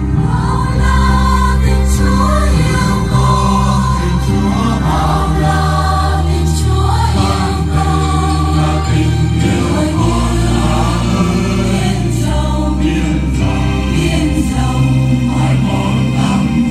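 Mixed choir of men's and women's voices singing a Vietnamese Catholic hymn in parts, accompanied by electronic keyboards holding sustained bass notes that change every second or two.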